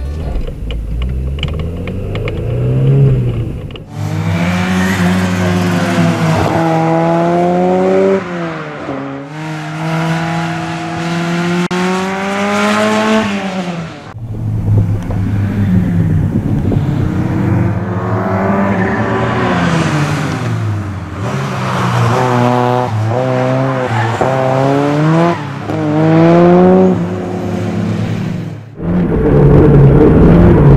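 Ford Sierra RS Cosworth's turbocharged 2.0-litre four-cylinder driven hard on a race circuit. The revs climb and then drop sharply again and again as it changes gear and lifts for corners.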